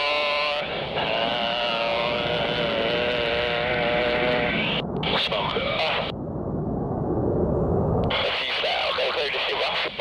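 Air-band radio receiver audio: a garbled, unintelligible voice-like transmission that holds a steady pitched tone for the first few seconds, then a muffled stretch of noise in the middle.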